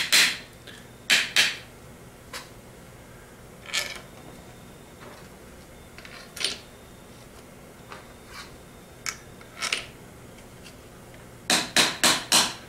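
Short metal knocks and clinks at irregular spacing as Ford 3G alternator parts are fitted together and lined up, with a quick run of louder knocks near the end.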